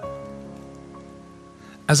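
Soft background music: a sustained chord of several held notes, slowly fading, under a pause in the talk. A voice starts speaking right at the end.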